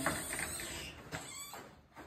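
A plywood-and-timber stall door swung by hand, with faint rubbing as it moves and a short knock about a second in; the sound fades away toward the end.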